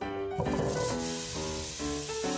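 Butter sizzling as it hits a hot stainless-steel pot: a hiss that starts suddenly and holds steady, under background music.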